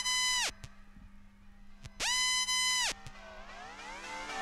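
A sparse passage of electronic music: two synth bleeps about two seconds apart, each sliding up into a held tone and falling away at its end, over a low steady drone with a few faint clicks.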